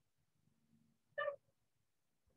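One brief high-pitched vocal sound a little over a second in, over otherwise near silence.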